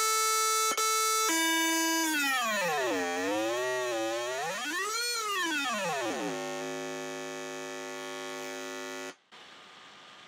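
Raw synthesized oscillator tone from an ofxMaxim maxiOsc in an openFrameworks app, buzzy with many harmonics, its pitch set by the mouse's horizontal position. It holds a high note, steps down and swoops low and back up, then holds a low buzz and cuts off suddenly about nine seconds in.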